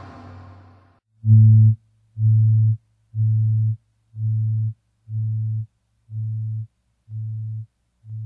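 Distorted rock music dying away in the first second, then a low steady tone beeping about once a second, each beep about half a second long, fading a little with each beep.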